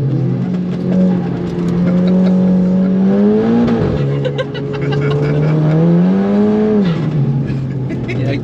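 Turbocharged Audi S3 TFSI four-cylinder engine in a modified VW Caddy, heard from inside the cabin, accelerating along the track: its pitch climbs steadily, drops back sharply about four seconds in, climbs again, and falls back near the end.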